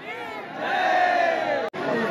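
Crowd of devotees calling out together, many overlapping voices growing louder about half a second in. The sound drops out for an instant near the end.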